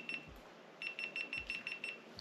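GoPro action camera beeping its overheating warning: a short burst of high beeps at the start, then a fast run of about seven beeps a second for around a second, from about a second in.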